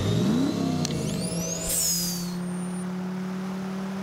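Animated race-car engine sound effects. An engine revs up sharply and drops back, high whooshing passes fall in pitch as cars go by, then a steady low engine drone holds to the end.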